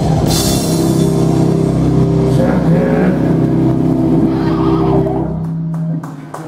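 Live metal band ending a song: a final drum hit with a cymbal crash, then a chord on electric guitars and bass held and ringing for about five seconds before it dies away near the end.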